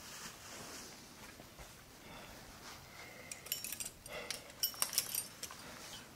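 Metal trad-climbing gear, cams and carabiners on a harness rack, clinking and jangling as a piece is sorted off the rack to be placed. A flurry of sharp clinks begins about three seconds in and lasts about two seconds.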